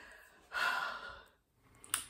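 A woman's breathy sigh: a single exhale about half a second long, starting about half a second in. A brief click follows near the end.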